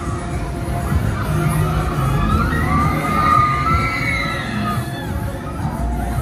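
Riders on a Huss Flipper fairground ride screaming over crowd noise, with one long, high scream that rises and falls about two seconds in.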